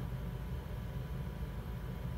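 Steady low hum with a faint even hiss: room tone, with no motor moving or other event.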